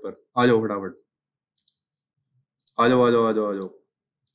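A man's voice in two short stretches, with two brief computer mouse clicks in the pause between them.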